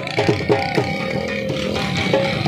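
Live folk music from a dhol drum and a wind instrument: the pipe holds a wavering melody line over steady drum beats.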